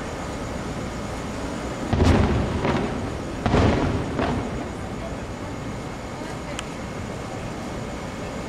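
Distant aerial fireworks shells bursting: four booms in two pairs, the loudest about two seconds in and again about three and a half seconds in, each dying away in a rolling echo. A steady background hum runs underneath.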